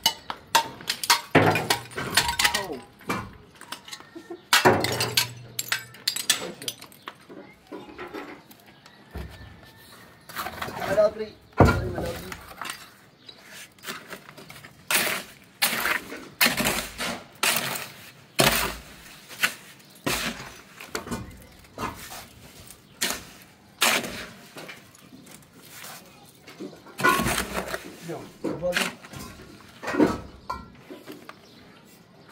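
Irregular series of sharp knocks and cracks, a few a second at times with short gaps, along with a person's voice now and then.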